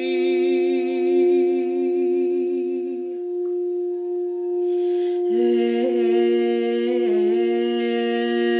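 Heart-chakra crystal singing bowl kept ringing by a mallet rubbed around its rim, a steady unbroken tone. A woman hums long held notes over it, stopping about three seconds in, taking a breath, and coming back in about two seconds later.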